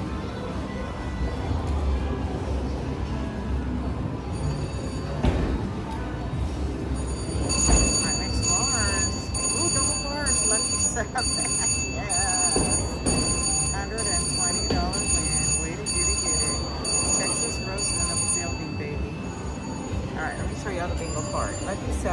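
VGT Polar High Roller slot machine paying out a 120-credit win: its win bell rings over and over, about once a second, for roughly ten seconds as the credits count up, starting about a third of the way in. Before the bell, the machine's reel-spin sounds play over casino background noise.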